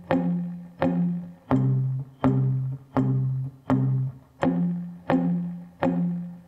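Electric guitar playing two-note power chords in time with a metronome, one strike about every 0.7 s, each ringing and fading: an F power chord rooted on the fourth string, changing to a lower C power chord about one and a half seconds in, then back to F about four and a half seconds in.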